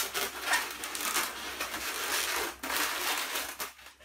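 Inflated latex modelling balloon being squeezed and pressed together by hand, the rubber rubbing on itself and on the hands in a dense run of small crackles that fades out just before the end.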